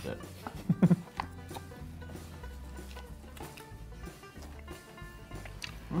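Soft background music playing, with faint crunching of a mouthful of salad with lettuce and croutons being chewed.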